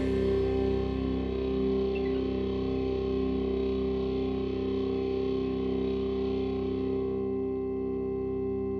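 A held electric guitar chord ringing out through effects at the close of a song, the tones steady while the high overtones slowly fade away.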